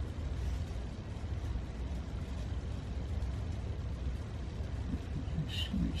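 Steady low rumble of room background noise, with a man's voice starting near the end.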